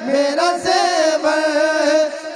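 A man singing a Sufi devotional kalam in a chanting style into a microphone and loudspeakers. The melodic line runs on without a break, with long held notes and gliding pitch.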